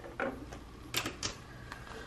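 Clear plastic cash envelope holding paper bills being picked up and handled: a few sharp plastic crinkles and clicks about a second in, and a fainter one shortly after.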